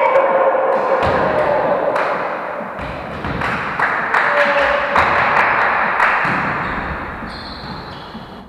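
A volleyball thudding several times as it is bounced and hit on the wooden gym floor, each knock echoing in the hall over a wash of players' voices.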